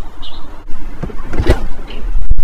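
Low wind rumble on the microphone, with a single sharp click about one and a half seconds in.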